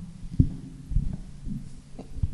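Dull thumps and knocks from a podium gooseneck microphone being grabbed and adjusted, coming through the PA about every half second over a steady electrical hum.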